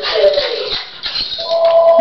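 Small Schnorkie dog whining with excitement: a falling whine near the start, then a long, steady high-pitched whine from about halfway through.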